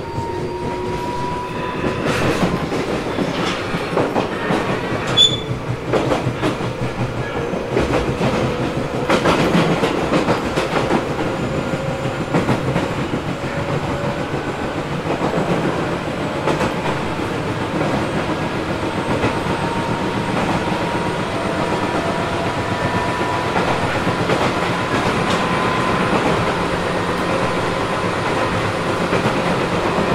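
Running sound of a Tobu 800 series electric motor car (MoHa 804-2) between stations: a steady rumble with rail-joint clickety-clack and a thin motor whine. The whine rises slowly in pitch at the start and again in the second half as the train gathers speed.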